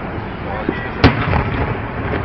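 Aerial fireworks bursting: a small pop, then one loud bang about a second in, followed by a few lighter crackles.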